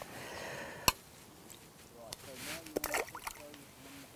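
A short slosh of water, then one sharp click a little under a second in. After that come faint handling clicks and a brief low murmur as a just-landed fish is dealt with at the bank.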